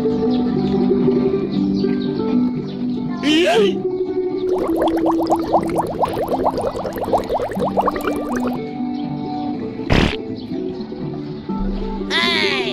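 Background music with steady held notes. A quick sliding whistle comes a little after three seconds in, then a rapid fluttering trill for about four seconds and a single sharp hit near the end.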